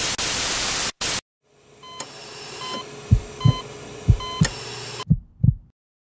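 Intro sound effects: about a second of loud static, then a low hum with short electronic beeps and a heartbeat thumping in three double beats before cutting off suddenly.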